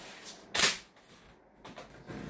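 A single short, sharp knock about half a second in, against quiet room tone.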